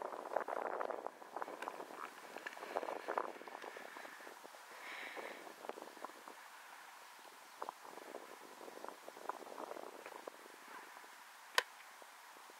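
A football struck in a punting drill: one sharp smack near the end, over faint outdoor background with a few soft knocks.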